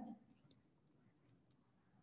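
Near silence with a few faint, sharp clicks, the loudest about one and a half seconds in, from a handheld eraser being wiped across a whiteboard.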